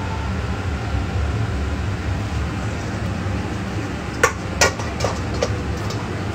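Steady low rumble with, about four seconds in, two sharp metallic clinks followed by two lighter ones, as from a stainless steel mixing bowl being handled.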